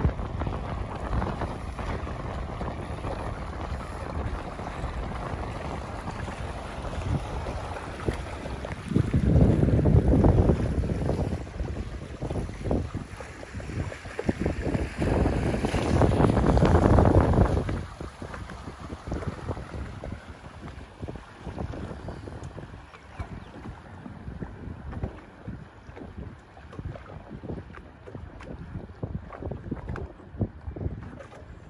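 Wind rushing over the microphone aboard a boat. It swells louder twice, about nine and fifteen seconds in, then eases off from about eighteen seconds.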